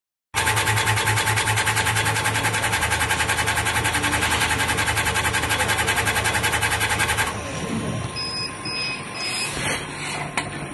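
Laser engraving machine raster-engraving at high speed: the head and gantry sweep back and forth in a fast, even pulsing, about ten strokes a second, over a steady hum. About seven seconds in the scanning stops, a whine glides down, and three short beeps sound as the engraving finishes.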